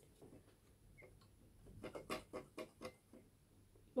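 Faint clicks and taps from a trumpet being handled: a quick run of about eight light clicks a little under two seconds in, lasting about a second.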